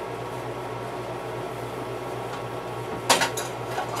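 A figurine's small detachable plastic hat falling and clattering: one sharp click about three seconds in, then a few lighter ticks as it bounces. Before it, only a low steady hum.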